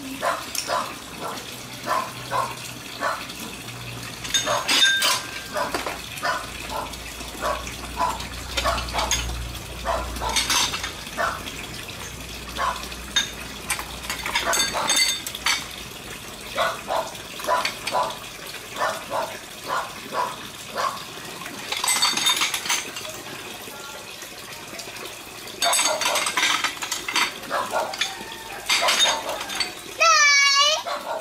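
Ceramic bowls and dishes being washed by hand in a plastic basin of water: a steady run of short clinks and knocks as they are picked up and set down, with splashing, and denser bursts of clatter and splashing near the end.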